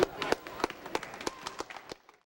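Scattered handclaps from a few spectators, sharp and irregular, fading away near the end.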